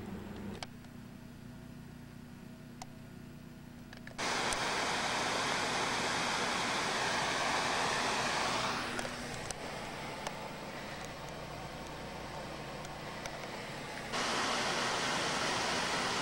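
Mountain creek rushing over rocks, a steady whitewater rush. It comes in abruptly about four seconds in, after a few seconds of faint hiss, dips partway through, then jumps back up loud near the end.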